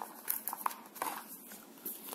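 Light clicks and taps from hands handling a cardboard box insert and a fitness band's small plastic tracker capsule, about six small knocks spread over two seconds.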